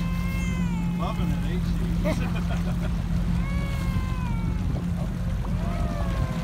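Motorboat engine running steadily under wind and water noise while towing. Over it come several long, high cries, each sliding slowly down in pitch, from voices calling out.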